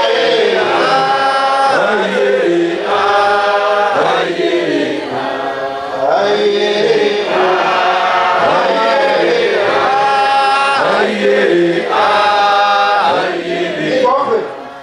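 A church choir of many voices singing a chanted hymn in long held phrases of about a second or more each, with short breaks between them.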